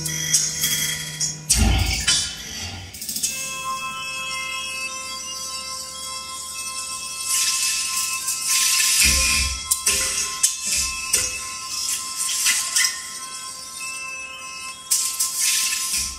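Electroacoustic music for amplified cello and digital audio: steady held electronic tones under bright, jingling, shimmering noise textures. Deep thumps come about two seconds in and again around nine seconds.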